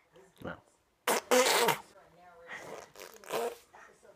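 Baby blowing raspberries, buzzing her lips: a loud one of about half a second just after the first second, and a shorter one near three and a half seconds, with small baby vocal sounds between.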